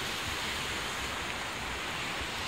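Sea surf breaking and washing over a rocky shore, a steady rush of water; a lingering swell keeps the waves rough.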